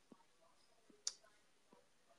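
Near silence broken by a few faint clicks, one sharper click about a second in.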